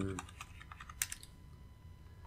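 Faint computer keyboard typing: a few quick key taps, then one sharper keystroke about a second in.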